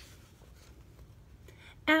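Faint rustling of a picture book's paper page being turned and laid flat. Near the end a woman starts singing.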